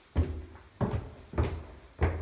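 Footsteps climbing a flight of stairs: four heavy thuds a little over half a second apart.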